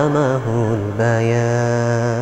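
A man's voice chanting unaccompanied in long, ornamented notes that waver in pitch, with short breaths between phrases, in the manner of Arabic Quranic recitation.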